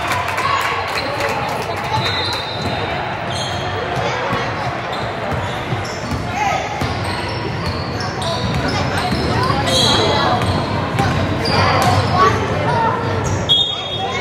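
A basketball dribbling and bouncing on a hardwood gym floor, with sneakers squeaking and spectators talking, all echoing in a large gym.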